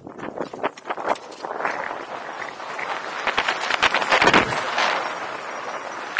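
A hang glider pilot's running footsteps on grass during a towed launch, a few quick footfalls a second, giving way to a rising rush of wind on the glider-mounted camera's microphone as the glider lifts off and picks up speed.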